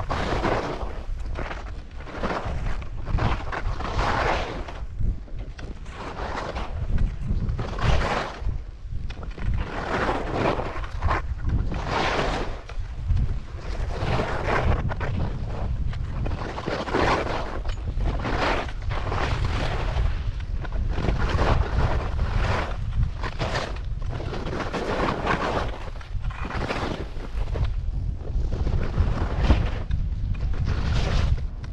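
Skis turning down a snow slope, a swish of snow with each turn roughly once a second, over a steady rumble of wind on the microphone.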